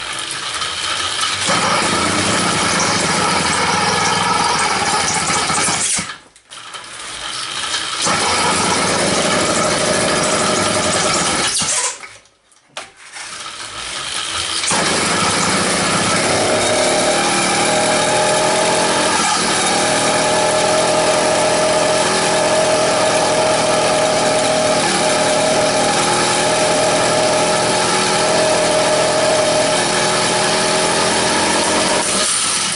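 A cheap Chinese 66cc two-stroke motorized-bicycle kit engine, on its first start after assembly, pedal-started and running. It drops out twice, about six seconds in and again about twelve seconds in, picks up again each time, and settles into steady running from about fifteen seconds in.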